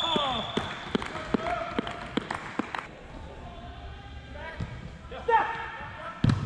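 Goalkeeper's padded gloves clapping together, a run of about seven sharp claps over the first three seconds, with players' voices shouting in the background and one louder shout near the end.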